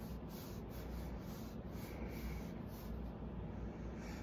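Faint, soft scratchy rubbing of hands on a deck of tarot cards, over a low steady hum.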